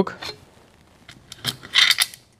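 A TravelScoot mobility scooter's aluminium seat yoke being pulled out of its frame tube: a few light clicks, then a short metallic scraping rattle near the end.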